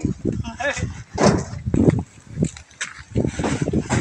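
Men's voices talking, with a few knocks and bumps as a heavy sack of corn is hoisted off a shoulder and set into a truck bed.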